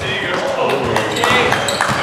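Sounds of a basketball game on a hardwood gym court: players' voices calling out indistinctly, with the ball bouncing on the floor, in a large echoing hall.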